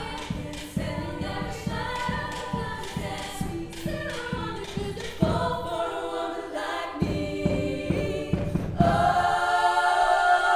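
Women's choir singing in harmony, with a steady beat under the first half. About nine seconds in, the voices swell into a loud held chord.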